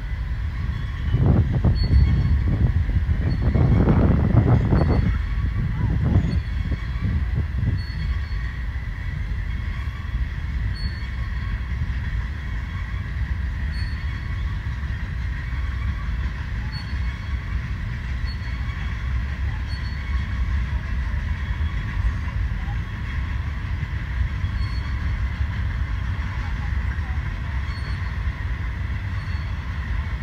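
BNSF freight cars rolling past on the rails: a steady low rumble of wheels on track, louder for the first several seconds. Faint high ticks recur about every second.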